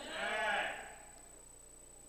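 A person's voice: one short, drawn-out vocal sound that rises and falls in pitch, much quieter than the preaching, fading out about a second in and leaving quiet room tone.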